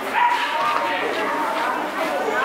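People talking at once, with a high voice among them, in a reverberant hall.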